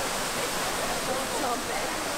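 Steady rush of a waterfall pouring into a swimming hole, with faint distant voices of people at the pool.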